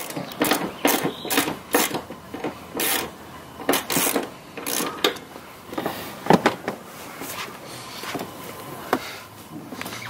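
Irregular clicks, knocks and clunks of a pickup truck's rear seat being worked loose and lifted out by hand, coming thick in the first half and thinning out after.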